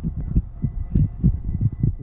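Low, irregular thumping rumble of wind buffeting the camera microphone, several gusts a second.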